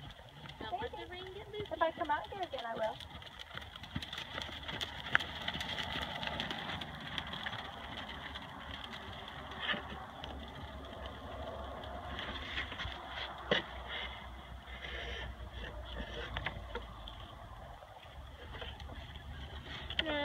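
Thoroughbred gelding trotting on a sand arena: soft, irregular hoofbeats in the sand. Indistinct voices in the first few seconds, and a low steady rumble through the middle.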